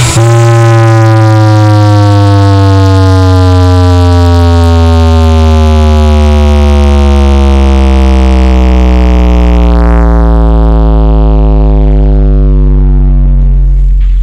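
A large 20-subwoofer sound system, under sound check, playing a very loud sustained bass tone that glides slowly and steadily downward in pitch, then cuts off.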